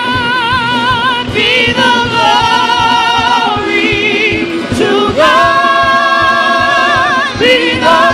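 Gospel praise song in a church: long held sung notes with a wavering vibrato over a band accompaniment with a steady beat.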